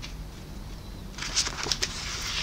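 Paper rustling and crackling as the pages of a worn paperback book are handled and turned, starting a little past the middle, with a few sharp crinkles.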